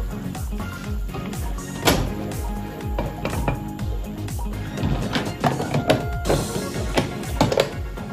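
Background electronic music with a steady beat, with a few sharp strikes about two seconds in and several more near the end.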